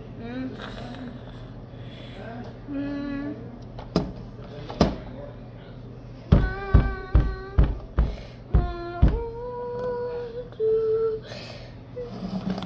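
A child humming or singing wordlessly in a string of short pitched notes, some held steady, in the second half. A little before, two sharp clicks about a second apart.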